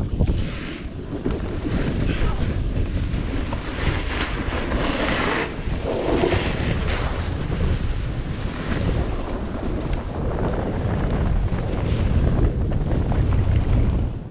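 Wind rushing over the microphone of a snowboarder's camera while riding downhill, with the hiss and scrape of the snowboard on packed snow, louder for a stretch about five seconds in.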